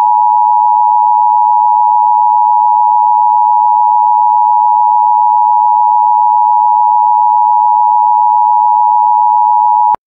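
Emergency Alert System attention signal: two steady tones sounding together, held loud and unchanging for about ten seconds and cutting off abruptly near the end. It is the alert tone that announces an emergency message is about to be read.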